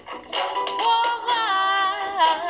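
Song playing: a singer holds one long, wavering note, starting about halfway through, over a plucked-string accompaniment.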